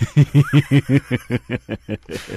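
A person laughing in a quick, even run of short chuckles, about seven a second, trailing off near the end.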